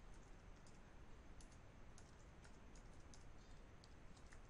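Faint, scattered computer keyboard keystrokes over near-silent room tone.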